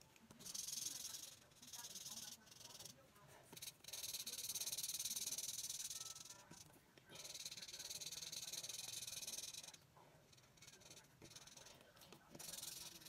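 Felt-tip marker scribbling back and forth on paper, in stretches of a few seconds with short pauses between them.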